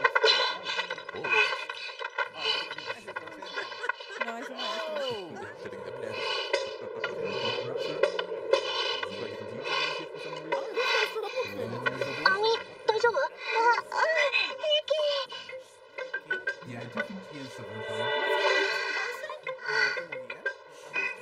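Anime soundtrack: a character speaking in Japanese over sustained background music, with the music holding steady throughout and the speech coming in short phrases.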